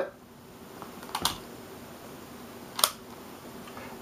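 A few sharp clicks from small plastic portable speakers being handled and swapped: a quick double click about a second in and a single click near three seconds, over quiet room tone.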